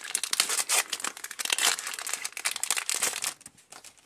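Foil Pokémon booster pack wrapper crinkling as it is torn open by hand, thinning out to a few faint crackles after about three seconds.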